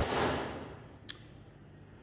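A single sharp smack right at the start, trailing off over about half a second, then a faint tick about a second in; otherwise quiet room tone.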